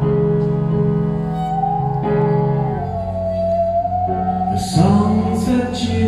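A live band plays an instrumental passage: keyboard chords from a Nord Piano 5 are held under a bowed musical saw. The saw's wavering, gliding tone enters about a second and a half in.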